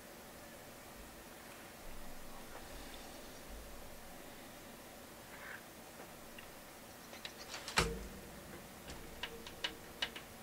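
Quiet room with a few small clicks and taps. The loudest is a sharp click with a dull knock about three-quarters of the way in, followed by a short run of lighter clicks near the end.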